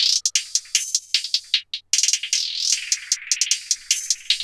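Hi-hats and cymbals of an electronic hip-hop beat playing through a steep low-cut EQ set at about 1000 Hz, so only the high end comes through: rapid hi-hat ticks with a sweeping cymbal tone, thin and without any bass.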